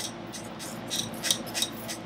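Wire whisk beating waffle batter in a stainless steel bowl, its wires scraping and clicking against the metal sides in a quick run of strokes, several a second.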